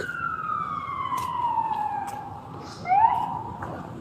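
Emergency-vehicle siren wailing: a long tone falls slowly in pitch over about two seconds, then rises again quickly about three seconds in and holds.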